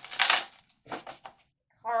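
A deck of oracle cards handled and shuffled by hand: a short burst of card rustling, then a few quick card flicks.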